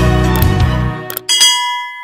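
Background music fades out about a second in. Then come a couple of mouse-click sounds and a single bell ding from a subscribe-button animation. The ding rings on and dies away slowly.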